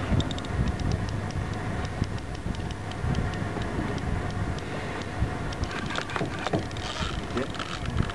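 Fishing reel ticking in an even series, about four clicks a second, as the angler works a hooked bluefin tuna. The ticking stops a couple of seconds before the end. Under it runs a steady low rumble, and faint voices come in near the end.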